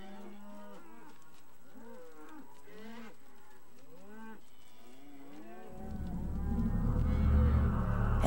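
Several cows mooing, short arching calls one after another, the cattle restless. Near the end a low rumble swells underneath.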